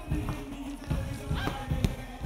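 Quiet arena music playing under the court sounds of a basketball game: scattered low thuds of the ball and players' feet on the court.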